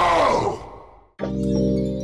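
A drawn-out ape-like groan from a chimpanzee character in a film, rising and then falling in pitch and fading out about a second in. After a brief silence, a steady sustained music chord starts suddenly.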